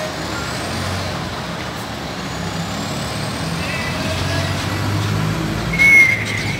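Intercity coach's diesel engine running as it pulls away and drives past close by, growing louder as it nears. A short high-pitched squeal near the end is the loudest sound.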